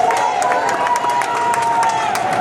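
Outdoor crowd cheering and clapping at the end of a speech, with many voices and dense hand claps. A long, steady, high-pitched held note rides over it and fades near the end.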